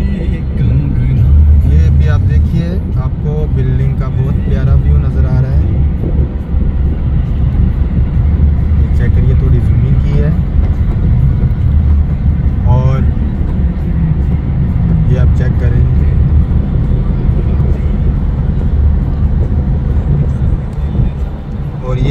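Loud, steady low rumble of a car driving at highway speed, heard from inside the car, with a person's voice coming through now and then.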